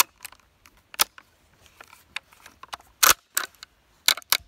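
Steyr M95/30 straight-pull rifle bolt being worked by hand in the receiver: a few scattered metallic clicks, a sharp one about a second in and the loudest about three seconds in. The bolt head is sticking instead of rotating out of line on extraction.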